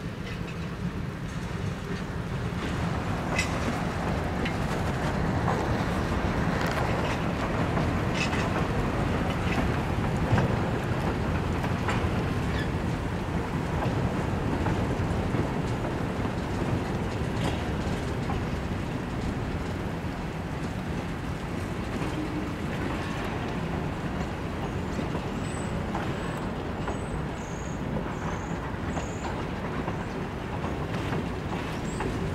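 A string of freight cars, tank cars and a boxcar, rolling slowly in reverse, shoved by locomotives well out of earshot. There is a steady rumble of steel wheels on the rails, with scattered clicks and knocks as the wheels cross rail joints, and a few faint high squeaks near the end.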